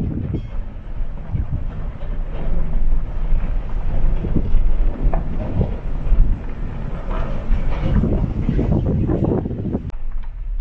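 Pickup truck rolling slowly across a gravel lot: a steady low rumble with tyre crunch and uneven rattling, busier near the end.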